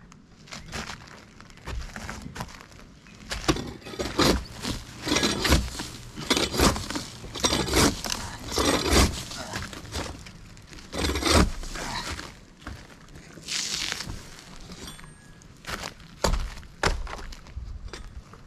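A long-handled shovel scraping and prying up an old gravel-surfaced flat roof, with the gravel crunching. It makes a run of irregular scrapes, crunches and knocks that thins out over the last few seconds.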